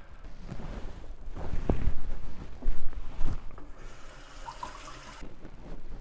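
A few sharp knocks, like a knife on a chopping board, then a kitchen tap running for about a second and a half.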